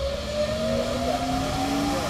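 A motor running with a steady hum and a whine that rises slowly in pitch.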